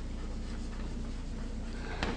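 Chalk scratching on a blackboard as a word is written by hand, over a steady low hum.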